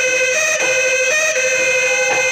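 Pepa (Assamese buffalo-horn pipe) played loudly through microphones, a shrill reedy melody of held notes stepping back and forth between two nearby pitches.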